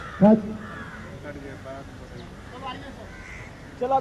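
Crows cawing a few times in the background, faintly, after a man's short loud shout or grunt just after the start.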